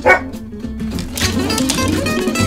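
A dog's single short bark right at the start, over background music that gets fuller about a second in.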